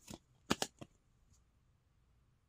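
A few short plastic clicks and taps from a trading card in a clear rigid plastic holder being handled and turned over, the loudest two close together about half a second in.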